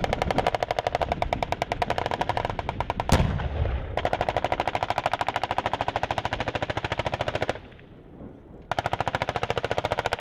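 Machine guns on M1 Abrams tanks firing long, rapid bursts at about ten rounds a second. About three seconds in comes a single heavier shot with a low boom, and the firing stops for about a second near the end before starting again.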